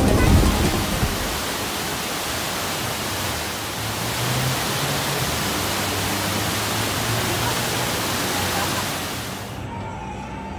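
Rushing water of a man-made waterfall pouring down a rock wall into a pool, a steady, dense wash of noise. It cuts off abruptly just before the end.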